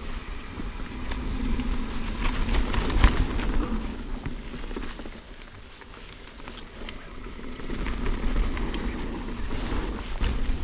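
Mountain bike riding down dry dirt singletrack: tyres rolling over dirt and roots with the bike rattling and sharp knocks over bumps, the loudest knock about three seconds in. A steady low rumble of wind on the helmet camera's microphone sits underneath.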